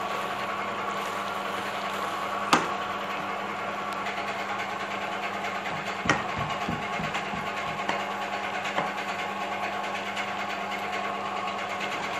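Steady machine-like hum with a couple of faint tones in it, and a single sharp knock of a utensil against the pan about two and a half seconds in.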